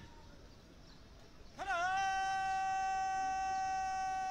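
A man's long, drawn-out shouted drill command on one held, steady pitch, beginning about a second and a half in with a slight upward scoop and sustained to the end.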